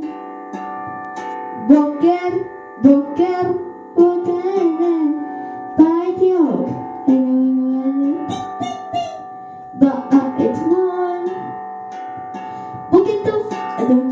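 A young girl singing a melody into a microphone over long, ringing instrument notes, with a quieter pause about two-thirds of the way through before she sings again.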